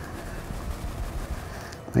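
Quiet handling noise of a capped plastic test tube being shaken to mix in reagent powder, over a low room hum, with no distinct knocks or rhythm.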